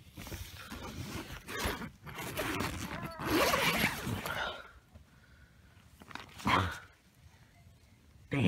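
Tent door zipper being pulled open, with nylon tent fabric rustling as someone climbs out of a tent, in rough rasps that are loudest about three to four seconds in. A short sharp sound follows about six and a half seconds in.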